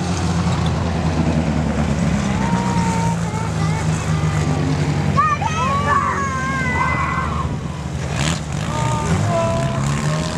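Stock car engines running steadily as the cars lap a dirt track, a continuous low drone. Spectators' voices are heard over it in the middle of the stretch.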